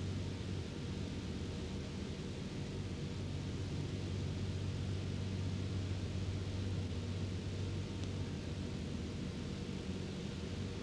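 Steady low hum with an even hiss under it, the background noise of an old video recording, with no other sound.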